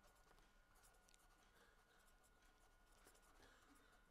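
Near silence, with faint scratching of a pen writing on paper in small, scattered strokes.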